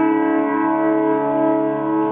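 Piano music: a chord struck just before, held and ringing, with a few soft notes added over it.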